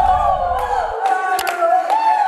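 The song's beat and bass stop about a second in, leaving a drawn-out, wavering vocal cry with a crowd-like backing. Two sharp mouse clicks from a subscribe-button animation come in the second half.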